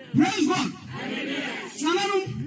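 A man preaching in a loud, shouted voice, with a congregation calling back between his exclamations.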